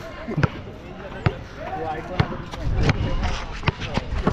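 Basketball bouncing on a hard outdoor court: about five sharp bounces, roughly a second apart, with players' voices around.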